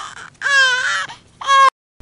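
Loud animal calls: a long wavering call about half a second in and a short, sharp one about a second and a half in.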